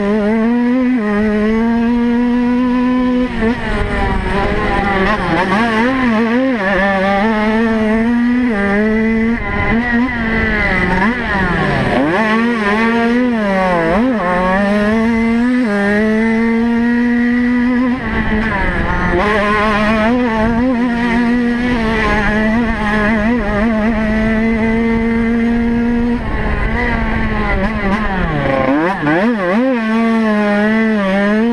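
Off-road racing motorcycle's engine at race pace, heard close up from on board. The engine note is held high for long stretches, and several times it drops as the throttle is rolled off, then climbs again as the bike accelerates.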